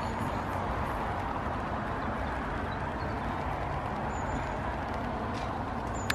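Steady outdoor background noise: an even low rumble with hiss and no distinct events.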